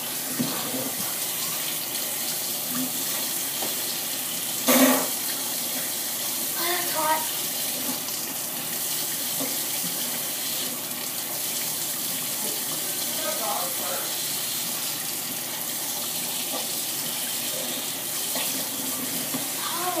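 Kitchen tap running steadily into a sink, with short gasps and a laugh over it and a brief louder burst about five seconds in.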